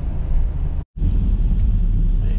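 Steady low rumble of a Honda Fit driving on wet pavement, heard from inside the cabin: engine and tyre noise. The sound drops out for an instant just before a second in, then resumes unchanged.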